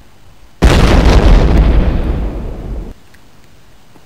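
A mine exploding, most likely a dubbed-in explosion sound effect: one sudden loud blast about half a second in, rumbling and fading over about two seconds before cutting off abruptly.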